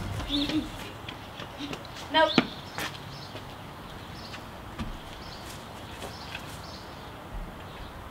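Quiet outdoor background with a few faint, short bird chirps, and a boy saying "nope" about two seconds in.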